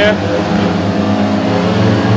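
Several 500cc single-cylinder methanol speedway bike engines revving hard together at the start tapes as a race is about to get away.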